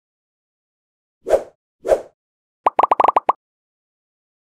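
Designed sound effects for an animated title: two short, soft thuds about half a second apart, then a fast run of about eight short, pitched blips.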